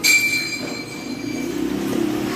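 A high-pitched steady whistle that starts suddenly and holds for about a second and a half before fading, over a faint low hum.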